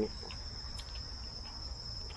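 Insects chirring in the surrounding vegetation: a steady, continuous high-pitched drone, with a few faint ticks over it.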